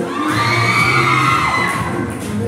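Children cheering with a long, high shout that rises and then falls, over the dance music that keeps playing underneath.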